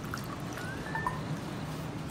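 Water being poured from a stainless steel measuring cup into a stone molcajete of crushed mint, a faint pour with a few small drips and a short rising note as the bowl fills.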